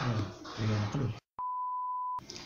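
A man's voice briefly, then a cut to dead silence and a click followed by a single steady electronic beep, one unwavering pitch, lasting under a second.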